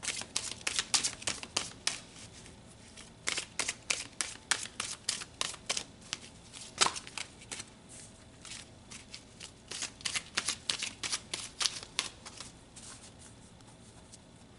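A deck of tarot cards shuffled by hand: runs of quick papery card slaps in several bursts with short pauses between them, stopping shortly before the end.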